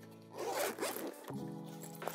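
A zipper on a padded fabric flight bag being pulled open, rasping for about a second and then trailing off. Quiet background music runs underneath.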